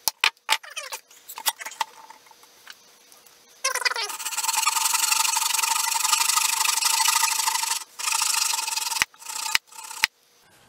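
A few sharp knocks as a holdfast is seated with a mallet, then a hand saw cutting through soft pine in a steady rasp for about four seconds, with a shorter burst of sawing after it and two clicks near the end.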